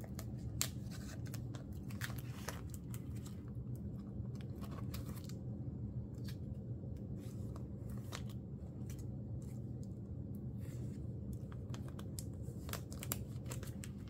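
Plastic binder pocket pages and photocard sleeves rustling and crinkling as cards are slid out of and into the pockets, with many short scrapes and clicks, over a low steady hum.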